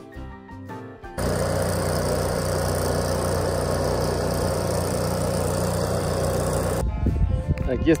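Arc welding on a steel pipe fence rail: a steady, loud crackling hiss over a low hum. It starts abruptly about a second in and cuts off shortly before the end.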